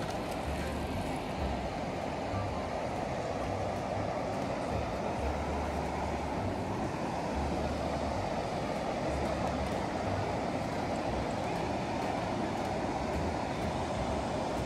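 Steady rushing of river water pouring over a low weir, with low rumbles coming and going underneath.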